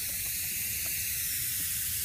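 Buck Bomb aerosol scent can locked open and emptying, hissing out a steady spray of scent fog.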